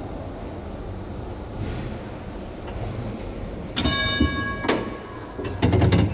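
Historic 1926 tram motor car running through an underground tram station: steady low rumble of its wheels on the rails, with a brief high-pitched ringing tone about four seconds in, lasting under a second.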